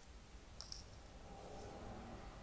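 Faint handling noise of hands and a crochet hook working in a cotton crocheted bag, with a soft click a little over half a second in.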